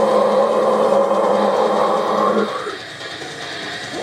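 A harsh screamed vocal held over a loud rock backing track, breaking off about two and a half seconds in and leaving quieter music beneath.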